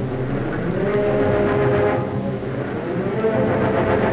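Orchestral film score playing held, sustained chords, with a melody line that slides slowly up and down over them.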